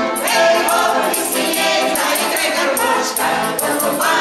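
Women's folk choir singing a song together, accompanied by an accordion.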